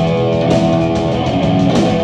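Live heavy metal band playing, electric guitar to the fore, holding notes over bass and drums.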